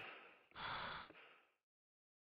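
A single short breathy gasp about half a second in, lasting about half a second, that dies away soon after.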